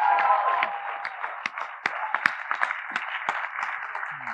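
An auditorium audience applauding, with a few cheers in the first second.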